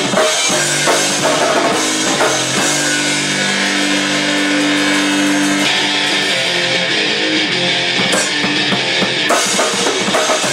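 Rock music with drum kit and electric guitar. The guitar holds a sustained chord through the middle, and the drums pick back up near the end.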